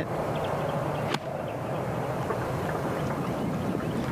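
A single sharp crack of a golf club striking the ball about a second in, over steady outdoor background noise.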